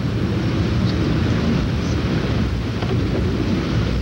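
Steady wind rumble and hiss on an outdoor video-camera microphone, with no distinct event.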